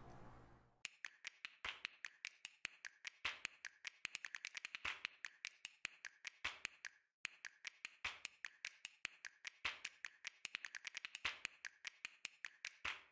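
Quiet percussive background music: a beat of sharp clicks and taps, several a second, with a short break about seven seconds in.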